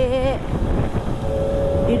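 Sport motorcycle running at a steady cruising speed, with wind rushing over the microphone, and a steady hum from about the middle on.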